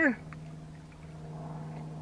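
A steady low hum with faint overtones, even in pitch and level, after a voice trails off at the very start.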